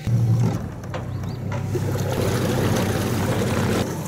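Bass boat's outboard motor running steadily, a low hum under a steady rush of water and wind noise.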